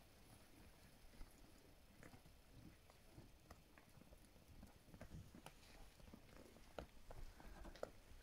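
Near silence with faint, scattered hoof steps of miniature donkeys walking about, a little more frequent in the second half.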